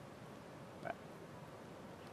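Quiet room tone in a hall, with one brief short sound a little before the middle.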